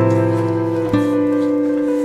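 Slow instrumental background music with held chords, changing chord about a second in.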